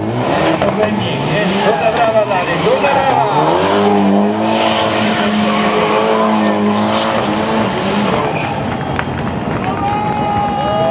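Syrena Meluzyna R Proto rally car spinning donuts: its engine revs rise and fall repeatedly, are held steady for a few seconds in the middle, then drop away, over the tyres squealing as they spin on the asphalt.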